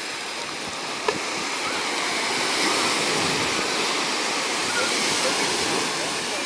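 Small ocean waves breaking and washing up a sandy beach, the surf noise swelling to its loudest in the middle seconds and easing near the end. A brief click about a second in.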